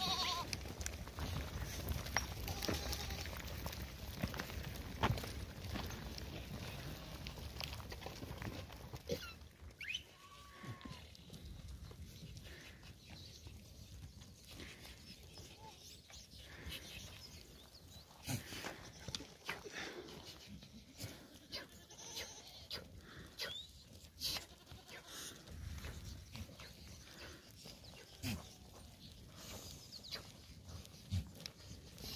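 Mixed flock of long-haired goats and sheep on the move, with an occasional short bleat and many scattered short clicks.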